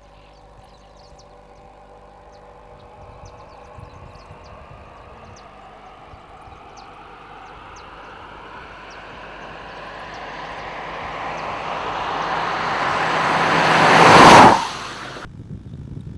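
Second-generation Ford EcoSport driving toward the microphone at speed, its engine and tyre noise growing steadily louder for about fourteen seconds, peaking as it passes close by, then dropping off sharply.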